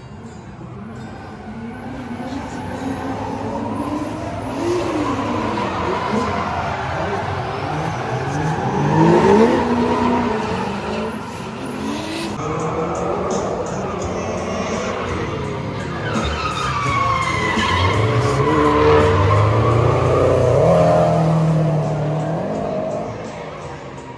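Two drift cars sliding in tandem: engines revving up and down and tyres squealing as they drift. The sound swells twice as the cars pass close, then fades near the end.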